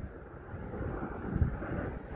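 Wind buffeting the microphone: an uneven low rumble that swells about one and a half seconds in.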